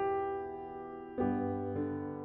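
Slow background piano music: sustained chords, each struck and left to ring down, with a new chord about a second in.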